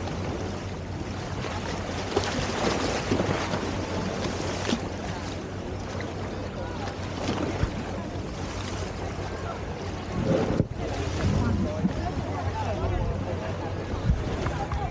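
Harbour waves washing and splashing against a stone seawall, with wind buffeting the microphone. People's voices come in near the end.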